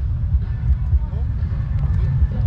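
Steady low rumble of outdoor background noise, with faint voices in the background about a second in.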